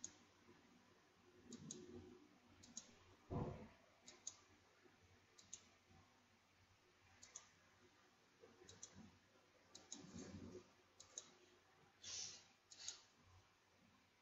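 Faint computer mouse clicks, a dozen or so at irregular intervals and several in quick pairs, with a soft low thump about three seconds in.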